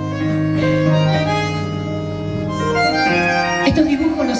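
Live band instrumental passage: a bandoneón plays a slow melody over sustained keyboard chords, and drum hits come in near the end.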